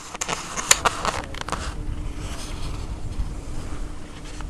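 Wind rumbling on the microphone of a handheld camera. A quick run of clicks and scrapes comes in the first two seconds, the loudest part.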